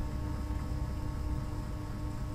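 Steady low electrical hum and rumble of background noise, with no distinct events.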